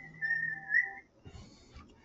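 A person whistling a short, high note that dips slightly in pitch and rises again, lasting about a second before it stops.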